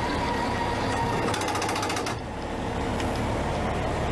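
Cummins Onan RV QD 12500 diesel generator running steadily, a continuous mechanical drone with a faint fast rhythm.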